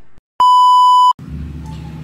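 A loud electronic bleep: one steady high tone lasting under a second that starts and stops abruptly, following a moment of dead silence.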